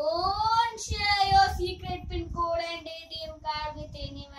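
A young boy singing a short tune unaccompanied, his voice sliding up at the start and then holding a run of steady notes.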